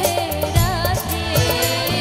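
Live performance of a Bengali song: a woman singing with band accompaniment and a steady percussion beat.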